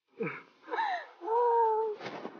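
Wordless vocal cries from a person: a short falling cry, a second falling cry, then a high-pitched cry held steady for about half a second.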